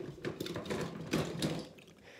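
Small die-cast and plastic toy monster trucks clicking and rattling together as they are handled, a rapid, uneven run of little clacks.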